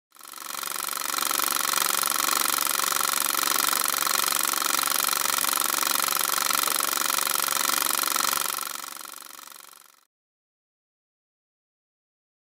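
Film projector running: a steady, rapid mechanical clatter with a whirring hum. It fades in at the start, then fades out and stops about ten seconds in.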